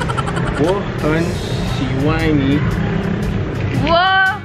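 A person's voice sliding up and down in pitch in short stretches, over a steady low background hum.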